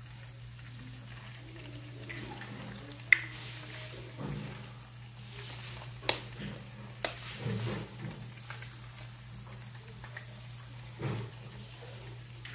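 Eggs and sausages frying with a faint sizzle in a nonstick frying pan, with a few sharp taps as an egg is cracked against the pan and dropped in. A low steady hum runs underneath.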